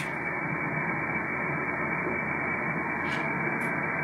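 RTL-SDR receiver in lower-sideband mode playing ham-band static with no station tuned in: a steady, even hiss, thin and muffled because the sideband filter cuts off the top.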